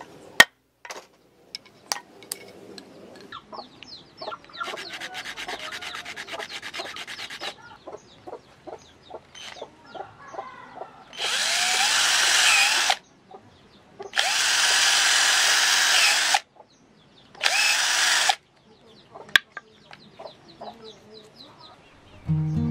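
Cordless drill boring into a small wooden block in three bursts, the second the longest, each with the motor's whine under the cutting noise. Earlier, a sharp click and light ticks, then a few seconds of rapid even rasping as a blade works a thin wooden stick.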